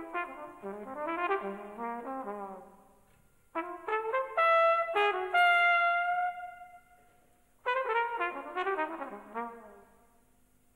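Unaccompanied jazz trumpet playing three phrases separated by short pauses: a quick run of notes, then a phrase that ends on a long held high note, then another quick run near the end.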